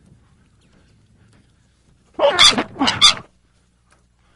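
Black swan giving loud calls in quick succession, starting a little after two seconds in and lasting about a second.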